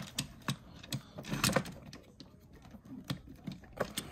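Hard plastic toy parts clicking and knocking together as an action figure and its parts are fitted onto a plastic toy motorcycle by hand: a string of irregular sharp clicks.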